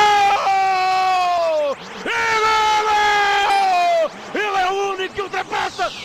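A Portuguese radio football commentator's goal call: two long, high-pitched held shouts of about two seconds each, each dropping in pitch as it ends, then shorter excited shouted words from about four seconds in.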